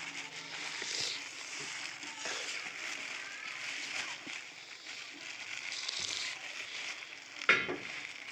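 Thin plastic bag rustling and crinkling as hands break pieces off a wild honeycomb inside it, with small sticky crackles. A brief sharper sound comes near the end.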